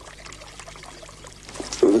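Lake water splashing and lapping softly at a reedy shore, a low steady wash.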